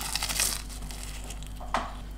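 Crackly crinkling and rustling of a flaky puff-pastry tart being picked up off a plate by hand: one rustle at the start and a shorter one near the end.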